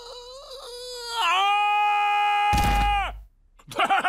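A cartoon elderly man's voice saying 'ah' after taking medicine for a lost voice: soft and wavering at first, then about a second in it swells into one long, loud, steady 'aaah' that cuts off about three seconds in, the voice back and much louder. A low rumbling blast joins the shout in its last half second.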